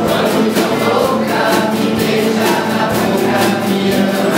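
An ensemble of acoustic guitars strumming together, with a drum kit keeping a steady beat and a group of voices singing along.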